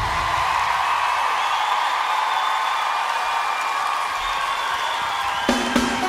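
Live pop band at a concert: the bass and drums drop out, leaving held notes over the audience cheering. The full band comes back in with drum hits about five and a half seconds in.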